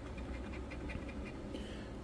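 A coin scratching the coating off a scratch-off lottery ticket: a quick run of faint, short scrapes.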